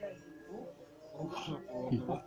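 Faint, indistinct speaking voices, broken by short pauses, with a slightly louder snatch of voice near the end.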